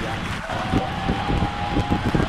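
Distant rumble and crackle of the Starship Super Heavy booster's 33 Raptor engines in flight. A steady high tone is held over it from about half a second in.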